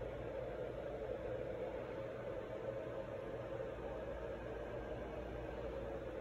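Steady room tone in a small room: an even low hum and hiss with no distinct events.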